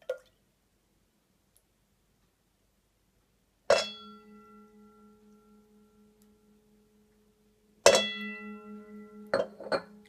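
A metal teaspoon clinks against a stainless steel mixing bowl twice, about four seconds apart, as spoonfuls of olive oil are tipped in. Each strike leaves the bowl ringing, fading over a few seconds. A few lighter taps follow near the end.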